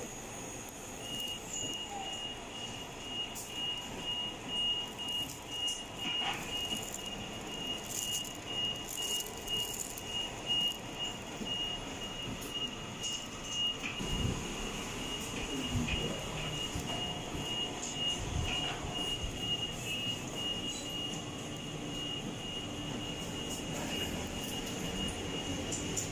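A steady high-pitched electronic whine, pulsing slightly, starts about a second in and lasts until near the end, over faint clicks and a low rumble.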